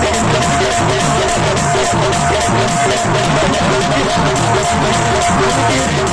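Loud live band music: an electronic keyboard with a barrel drum beating a steady, driving rhythm for dancing.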